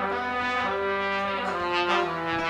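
A dangdut band playing the instrumental intro of a song: a melody of long held notes, moving to a new note about every half second.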